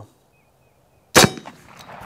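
A single sharp report from an AirForce Texan .45 caliber pre-charged pneumatic big-bore air rifle firing, about a second in, with a brief ringing tail.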